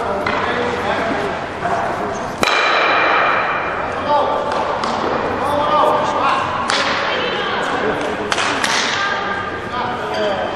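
Ice stocks clacking into each other on the ice: one sharp, loud knock about two and a half seconds in that rings on, and two more knocks later, over a background of voices in a large ice hall.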